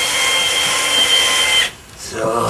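Cordless drill/driver running steadily, a high motor whine, as it drives a screw through a perforated rubber mat into a wooden board. It cuts off suddenly near the end as the screw is driven home tight.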